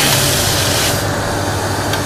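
A steady low mechanical hum, with a hiss over it for about the first second.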